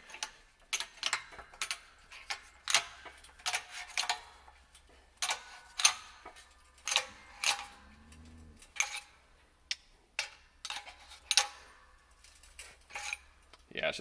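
Hydraulic bottle jack of a 12-ton shop press being pumped: a run of irregular, sharp metallic clicks and clinks, about one or two a second, as the ram is driven down onto a glued wooden block.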